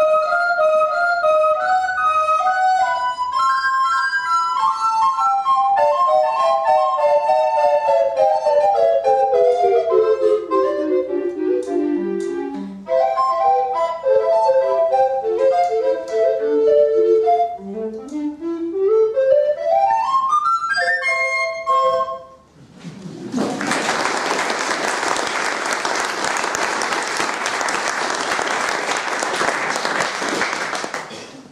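Recorder ensemble playing in several parts. The line falls steadily, then a quick rising run leads to a final chord that ends about three-quarters of the way through. Audience applause follows.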